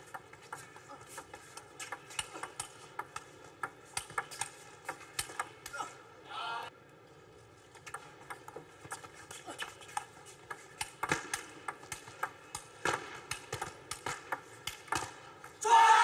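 Table tennis rallies: the celluloid ball clicking back and forth off the rackets and the table in quick irregular runs, with short gaps between points.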